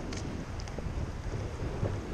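Wind buffeting the microphone of a camera on a sea kayak, over the lapping of sea water around the boat, with no distinct events.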